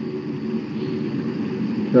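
Steady background hum and hiss, with no distinct event.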